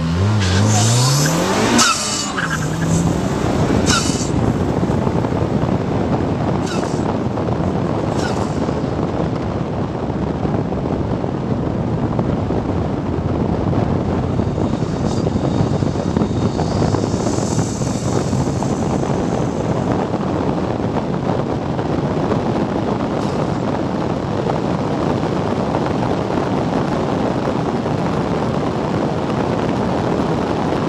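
Car engine accelerating hard from a rolling start, its revs climbing in rising sweeps over the first few seconds. After that a steady rush of wind over the open car at high speed drowns out most of the engine.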